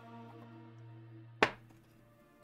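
Quiet background music with long held notes. About a second and a half in, a single sharp knock as a mug is set down on a hard desk.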